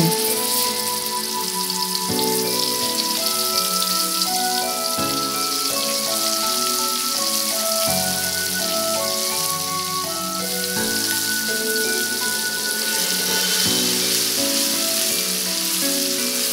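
Ground spice paste sizzling as it fries in hot oil in a wok, a steady high hiss, under background music of held notes.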